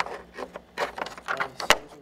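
Handling noise from threading a rear camera's cable through the car's rear trim: several short rubbing and scraping sounds of cable against plastic, then one sharp click near the end.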